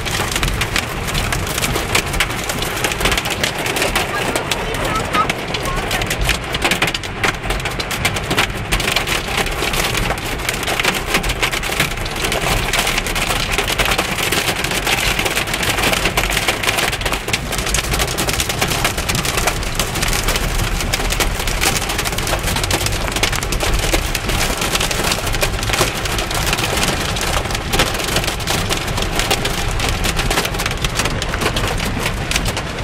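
Hail and heavy rain hitting a car's roof and windshield, heard from inside the cabin: a dense, unbroken clatter of sharp impacts over the steady rush of rain.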